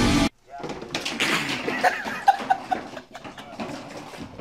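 Loud rock music with electric guitar cuts off abruptly just after the start. What follows is much quieter: a low, indistinct voice and a few small knocks in a small room.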